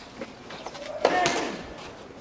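A sharp crack of a tennis ball struck on a clay court about halfway in, followed straight away by a player's loud shout that rises and falls and fades over about half a second.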